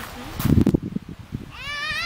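A young child's short, high-pitched, wavering squeal near the end, after a brief low rumble about half a second in.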